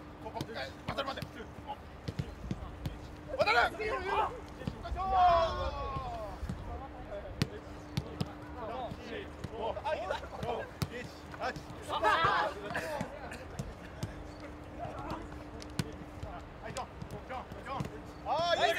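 Footballs being struck in quick one-touch passes on grass, a string of short sharp thuds, with players shouting and calling out in between; the shouts are the loudest sounds, a few seconds in, about twelve seconds in and near the end.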